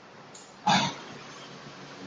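A man's short grunt, a single burst about two thirds of a second in, over faint room noise.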